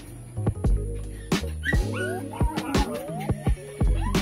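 A young puppy whimpering and yipping in a few short rising cries around the middle, over background music with a steady beat.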